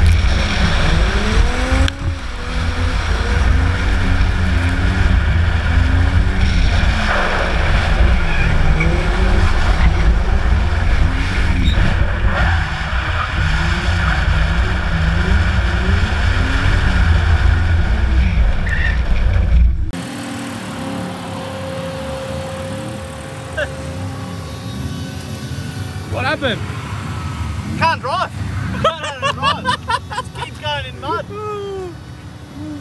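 Ford Falcon's engine revving up and down over and over, heard from inside the car's cabin while it is driven round the track. About two-thirds of the way through it cuts off abruptly to a much quieter scene with a steady hum.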